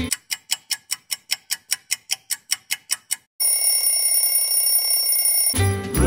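Ticking-clock sound effect, about six even ticks a second for about three seconds, then a steady bell-like ringing tone for about two seconds before the music resumes: the pause in the song for the freeze, timed by the ticking and ended by the ring.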